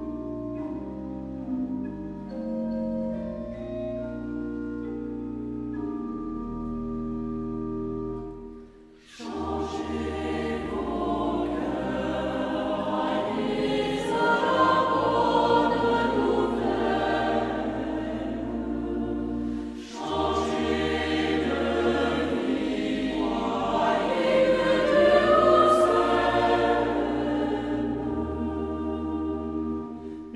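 Church organ playing an introduction of slow held chords, then a choir entering about nine seconds in, singing a French sacred hymn over the organ, with a brief break between phrases about twenty seconds in.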